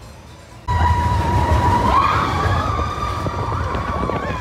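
Big Thunder Mountain Railroad mine-train roller coaster: after a quiet start, the sound cuts in suddenly less than a second in to riders screaming and whooping over the rumble of the train on its track, one long scream rising in pitch midway.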